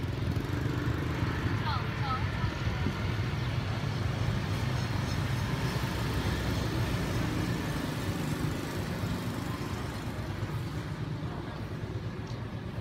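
Steady low engine hum of motor vehicles with an even background haze and faint voices, and a few short high chirps about two seconds in.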